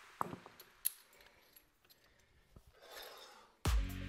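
A few small metallic clicks and clinks as resistance-band clips are unhooked and hooked on, with a soft rustle. About three and a half seconds in, background electronic music with a heavy beat, about two beats a second, starts up and is the loudest sound.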